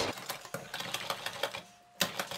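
Wire whisk beating cake batter in a glass bowl: a rapid run of light clicks as the wires strike the glass, stopping about a second and a half in.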